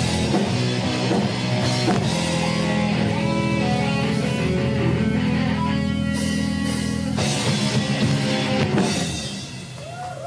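Live rock band playing amplified through a club PA: electric guitar, bass guitar, drum kit and keytar. Long chords are held through the middle with cymbals ringing, then the level falls away near the end.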